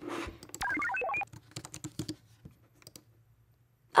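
Typing and clicking on a computer keyboard and mouse, in a scatter of sharp clicks. Early on there is a quick run of short beep tones that step upward in pitch.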